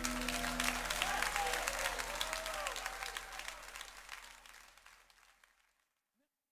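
Audience applauding and cheering as the band's last sustained keyboard chord dies away about a second in; the applause fades out near the end.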